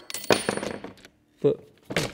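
A loose metal retaining bolt from a lawn scarifier's cartridge dropping out and clattering onto the workbench with a brief metallic ring, about a third of a second in.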